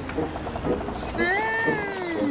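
A cartoon character's wordless vocal sound, a long hummed "hmm" that starts about a second in, rises and then slides down in pitch. It comes after a few short clicking sounds.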